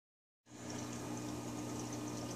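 Aquarium pump and aeration running: a steady low hum under a wash of bubbling water, starting about half a second in.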